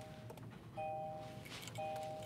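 2023 Kia Sportage's in-cabin warning chime sounding with the driver's door open: a two-note electronic ding repeating about once a second.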